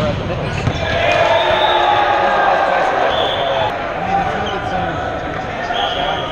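Volleyball rally on a hardwood gym court, echoing in the hall: players shouting to each other, and sneakers squeaking briefly about halfway through and again near the end.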